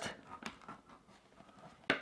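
A few faint, light clicks of a knife blade against a tin can's steel lid as a cotton thread wick is cut off.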